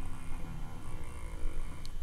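Low steady background hum, with a single faint click near the end.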